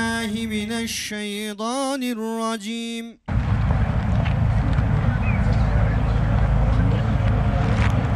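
A man's voice chanting in a drawn-out melody, held steady and then wavering up and down, for about three seconds before it cuts off. Then a steady loud rumbling noise of outdoor ambience, with heavy low buffeting typical of wind on the microphone.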